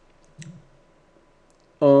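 A single short click about half a second in, followed by quiet room tone until a man's voice starts near the end.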